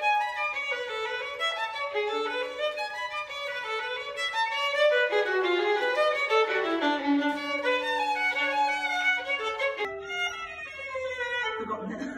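Solo violin, the IHS 1634 model by Charlélie Dauriat, bowed in a quick, continuous run of notes stepping up and down. About ten seconds in the sound changes abruptly and the playing carries on in a new passage.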